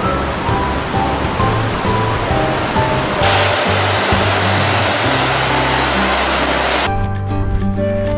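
Rushing water of a mountain stream over background music; about three seconds in the water gets louder and brighter, the sound of a cascade, then it cuts off abruptly near the end, leaving only the music.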